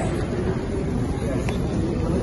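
Airport terminal hall ambience: a steady low rumble with indistinct voices of people talking nearby.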